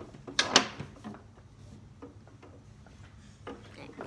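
Wooden clatter from a foosball table: one sharp clack about half a second in, followed by a few faint knocks.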